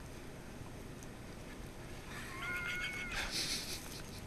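A faint, high, steady squeaky call about two seconds in, held for about a second, then a short hiss.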